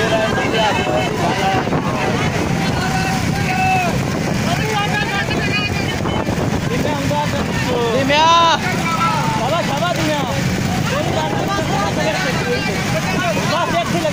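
Small motorcycle engines running steadily alongside, with wind on the microphone and men's voices shouting over them; the loudest shout comes about eight seconds in.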